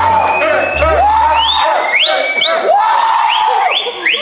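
A group of people shouting and whooping together in a string of rising, drawn-out cheers, over background music whose bass beat drops out about a second and a half in.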